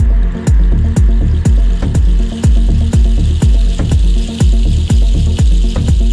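Progressive house music from a DJ mix: a steady four-on-the-floor kick drum about twice a second under sustained synth tones and bass. A hissing noise swell rises about two seconds in and eases off near the end.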